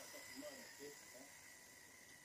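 Near silence with faint, distant voices in the background that die away about a second in.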